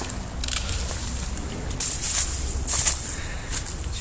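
Footsteps crunching and rustling through dry leaves and undergrowth, with a few louder crunches about two and three seconds in over a low steady rumble.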